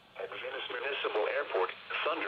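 NOAA weather broadcast received on a Radioddity GM-30 GMRS handheld on weather channel 1: an automated voice reading local weather observations, thin and narrow through the radio's own speaker. The voice comes in a moment after the start, over a faint hiss.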